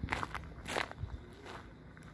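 Footsteps on a dirt path strewn with dry fallen leaves, a few short, irregular crunches.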